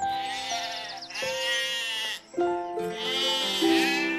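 Sheep bleating twice, one long bleat about a second in and another near the end, over background music with held notes.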